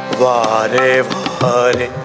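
A male Hindustani classical voice sings a melismatic phrase in Raag Yaman, its pitch wavering and gliding in ornaments. Tabla strokes sound under it.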